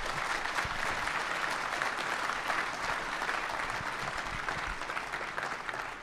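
Audience applauding after a talk: dense clapping that swells and holds steady, then thins out toward the end.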